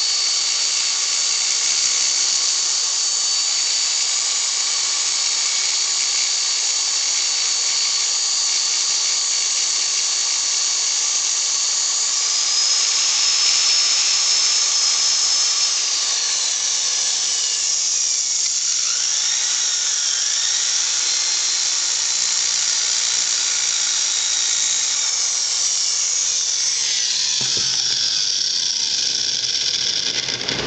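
Handheld power drill running with a high whine as its bit is pressed at an angle to widen a hole in a PVC pipe cap. The motor speeds up about twelve seconds in, then slows and wavers, and stops near the end.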